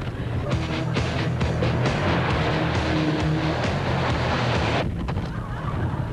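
Nissan Almera engine and road noise heard from inside the cabin during fast driving, with background music mixed over it. The sound changes abruptly about five seconds in, where the noisy part drops away.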